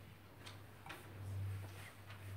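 Quiet room tone: a low hum that swells and fades, with a few faint, irregular ticks and clicks.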